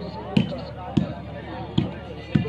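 A volleyball struck by players' hands during a rally: three sharp slaps, irregularly spaced, less than a second apart.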